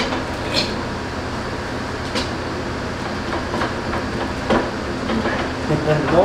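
Scattered light metallic clicks and taps as the tubular handle is worked into the socket of an aluminum floor jack, over a steady background hum.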